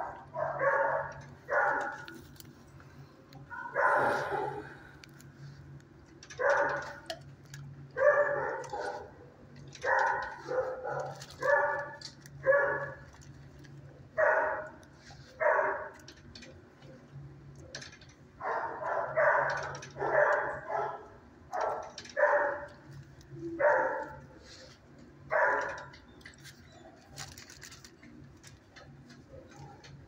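Dog barking in short, irregularly spaced barks, repeated many times and stopping near the end, over a steady low hum.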